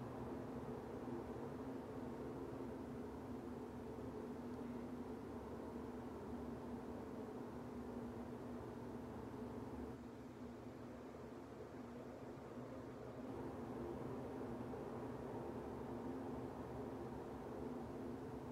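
Faint, steady low hum of room background noise, dipping slightly for a few seconds in the middle.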